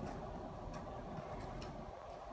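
Horse walking on an indoor arena's sand: about four faint, irregular light ticks, typical of hooves and tack, over a steady background hum.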